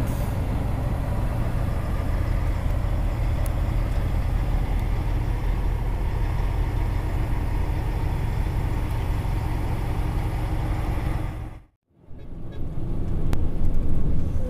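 Heavy diesel truck engine droning steadily under load, heard from inside the cab as the empty rig climbs a hill slowly. About 12 s in the sound cuts out abruptly for a moment, then returns quieter and builds again.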